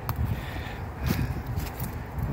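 Footsteps and rustling in dry leaf litter and brush, with uneven low rumble and a few faint crackles and clicks.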